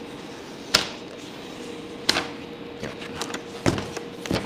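Several short, sharp crackles and taps of self-adhesive vinyl film and its paper release liner being handled and lifted off a shelf board, over a steady faint hum.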